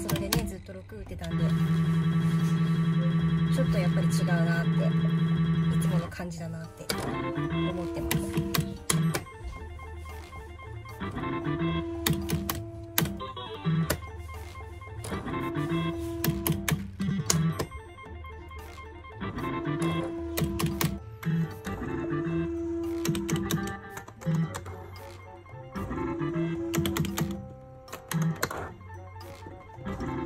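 Funky Juggler pachislot machine being played game after game: sharp clicks of the bet button, start lever and reel stop buttons, with a short electronic tone on each game, repeating about every three and a half seconds. A loud held electronic tone sounds for about five seconds near the start.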